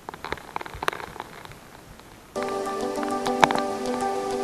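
Gravel and small stones dropped by hand into shallow water, a quick run of clicks and little splashes over about two seconds. Background music then starts suddenly and plays on, with scattered ticks over it.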